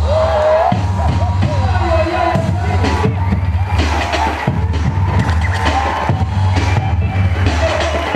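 Loud music with a heavy bass and a steady drum beat, played over an arena sound system.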